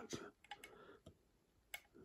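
Near silence: room tone in a pause in speech, with one faint short click near the end.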